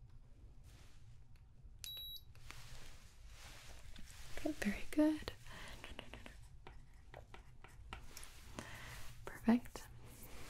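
A digital thermometer gives one short, high beep about two seconds in. Around it come soft clicks and rustles of objects being handled close to the microphone, and brief soft voice sounds around the middle and near the end.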